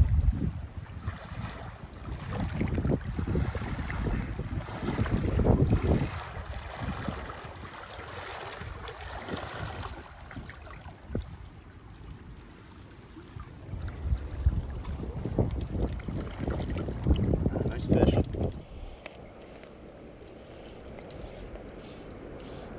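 Wind buffeting the microphone in irregular gusts over the steady rush of a shallow river. Near the end the gusts stop and only a quieter, even water sound is left.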